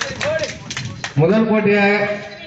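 People's voices calling out over a children's game, with a few sharp clicks in the first second and one loud drawn-out shout starting a little past a second in.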